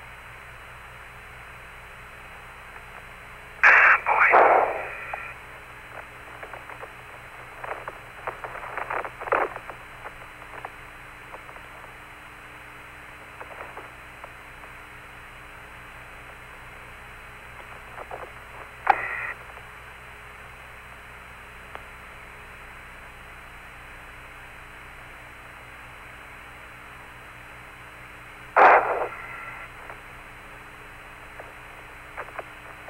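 Apollo lunar-surface radio downlink carrying an open channel: a steady hiss with faint hum and a thin high tone. Short bursts of static break in about four seconds in, around eight to nine seconds, once more a little before twenty seconds, and near the end.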